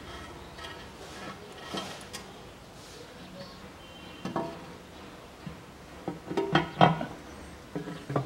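Pressed-steel engine oil pan being offered up by hand and pressed against the block, its thin metal knocking and ringing: a single clank about four seconds in, then a quick run of clattering knocks around six to seven seconds.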